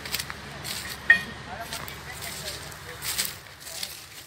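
Diesel engines of a JCB backhoe loader and a tractor running with a steady low rumble as the loader pushes a stuck, overloaded sugarcane trolley. A few sharp cracks and crackles are heard over it, about a second in and again near the three-second mark.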